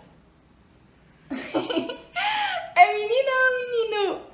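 A toddler's high-pitched voice answering after about a second's pause: a few short sounds, then one longer drawn-out one.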